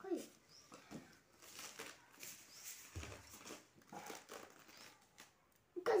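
Ripe jackfruit being pulled apart by hand: soft, irregular tearing and crinkling of the fibrous flesh and rind, with brief voices and a louder spoken word at the very end.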